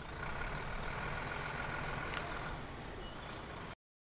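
Steady low rumble of an engine running, with a faint high steady whine over the first half or more. The sound cuts off abruptly just before the end.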